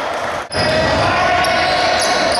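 Gym ambience during a basketball game: background crowd voices and play on the court, echoing in a large hall. The sound drops out sharply for an instant about half a second in, at an edit cut, then resumes steadily.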